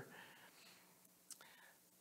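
Near silence: room tone in a pause between spoken sentences, with one tiny click about a second in.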